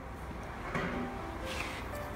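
Quiet room tone with a low hum and two faint, brief soft scrapes, about a second apart: a paintbrush working paint in a watercolor palette.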